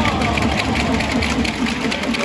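Crowd noise inside a domed baseball stadium: a dense, steady low rumble with a murmur of voices.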